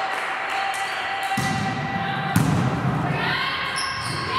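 A volleyball being bounced and hit on a wooden gym floor. The loudest sound is a sharp thump a little past halfway through, over the voices of players in the hall.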